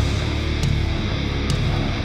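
Melodic death metal band playing live at full volume: distorted electric guitars, bass and drums together, with sharp drum hits standing out about once a second.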